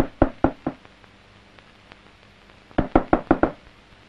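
Knuckles knocking on a panelled wooden door: four raps, a pause, then a second, quicker run of five raps about three seconds in.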